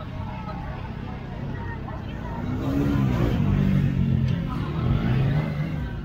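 Motorcycle engine revving up about two and a half seconds in and running louder for about three seconds, over crowd chatter.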